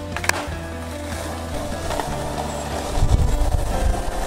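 Background music with a steady bass line over the rolling of skateboard wheels on asphalt, with a sharp click near the start. The bass swells louder near the end.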